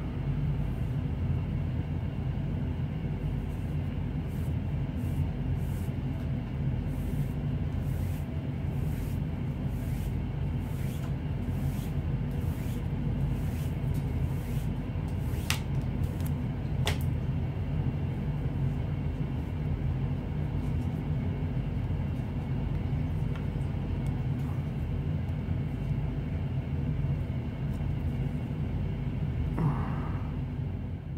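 A steady low hum with a mix of constant tones throughout. Over it, faint rustles of paracord being pulled through its wraps in the first half, and two sharp clicks about halfway through.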